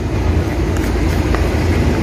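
Steady low rumble of an engine running nearby, with a couple of faint ticks of a wooden spoon against a plastic bowl as seasoned chicken pieces are stirred.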